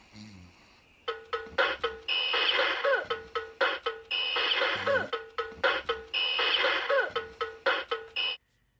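Vintage battery-operated drum-playing gorilla alarm clock going off. Fast drum strokes repeat throughout, with a high ringing that comes in bursts about a second long every two seconds. It starts about a second in.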